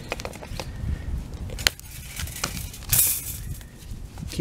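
Bolt cutters snipping steel chain-link fence tension wire: several sharp snaps and metallic clinks of the wire, the loudest a little before the middle and about three seconds in.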